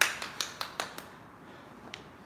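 A person clapping hands: a quick run of claps, about five a second, through the first second, the first one the loudest, then one more clap near the end.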